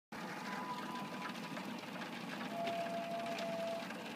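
Rotisserie turning on a Weber Summit Gold gas grill, making a distinctive whining noise from scraping. One thin whine sounds early on, and a lower one comes from about two and a half seconds in, both over a steady hiss.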